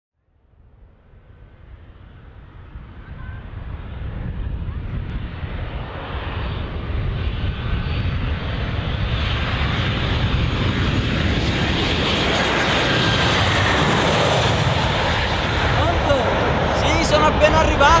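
An airplane passing low overhead: its engine roar fades in from silence and grows steadily louder over about ten seconds, then holds. It is loud enough to drown out a phone call.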